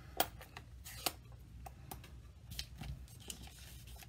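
Light clicks and taps of a clear acrylic stamp block being handled and pressed onto an ink pad on a craft desk. The two sharpest clicks come about a fifth of a second in and about a second in; fainter taps follow.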